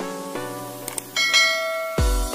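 Light plucked-string background music, then about halfway through a bright bell chime that rings on and holds: a notification-bell sound effect.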